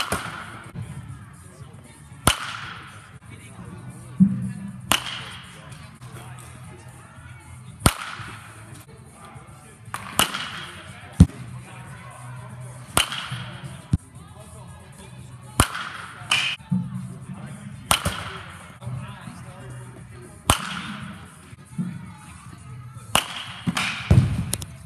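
Baseball bat striking pitched balls in batting practice: about ten sharp cracks, roughly every two and a half seconds, each ringing briefly in the indoor hall.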